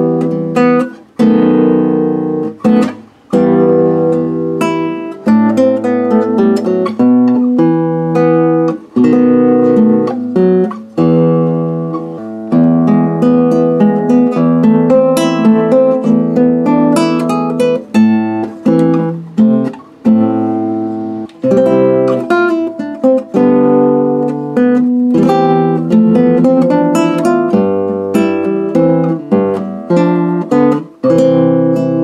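Almanza Spanish classical guitar with nylon strings, played fingerstyle: a melodic piece of plucked notes over bass notes, with short pauses now and then. The guitar has just had a fret dress, a new nut and a compensated saddle, and now plays in tune.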